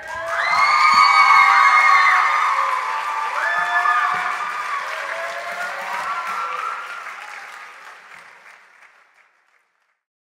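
Live audience applauding, with several cheering shouts early on the rising and falling pitch of voices; the applause dies away over the last few seconds.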